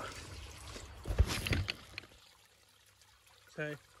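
Handling noise as a camera is picked up and set down: rustling and a few low bumps about a second in, over the trickle of a small pond fountain, then much quieter from about two seconds in.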